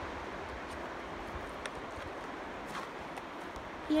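Steady outdoor background noise, an even hiss, with a couple of faint ticks.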